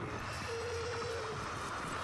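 A noisy sound effect from the animated show's soundtrack: a steady static-like hiss over a low rumble, with a held tone in the middle for about a second.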